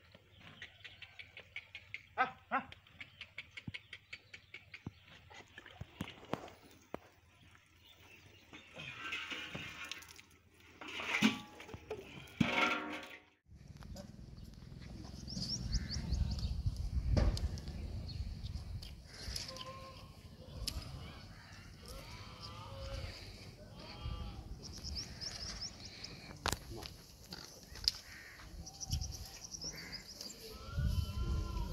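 Water buffalo yard sounds: soft clicks, then a few short pitched animal calls about a third of the way in. After a cut, steady outdoor noise with small high chirps and scattered short calls.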